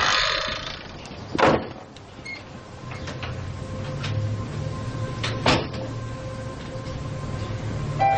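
A door opening with a short rustle, then two single heavy thumps about four seconds apart, over a low steady hum.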